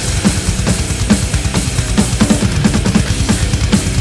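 Slow, heavy sludge-metal music with drums played on a Roland electronic drum kit: repeated snare hits, two to three or more a second, over a thick, low distorted bass and guitar bed.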